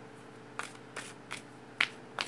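A deck of Enchanted Map oracle cards being shuffled by hand: a few short, sharp flicks of the cards, the loudest near the end.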